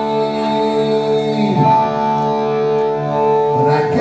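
A live punk band's electric guitars and bass ring out sustained, held chords between vocal lines. The chord changes about one and a half seconds in and again near the end.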